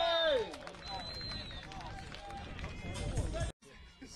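Several people shouting and calling out across a baseball field, loudest at the start, with more scattered voices after that; the sound breaks off suddenly about three and a half seconds in.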